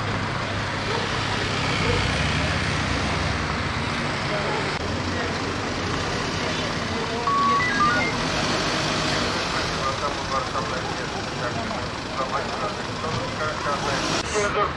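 Steady hum of idling vehicles and road traffic, with indistinct voices of people around that grow more noticeable in the second half. A few short high electronic beeps about seven to eight seconds in.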